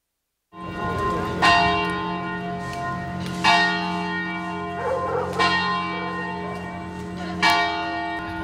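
A large bell tolling slowly: four strikes about two seconds apart, each stroke ringing on under the next, a funeral toll.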